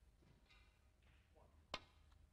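A single sharp click of a snooker shot near the end, against a quiet arena background.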